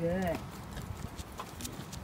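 A brief sing-song vocal sound from a person, rising then falling in pitch, followed by light footsteps and scattered clicks on a concrete sidewalk as a dog is walked on a leash.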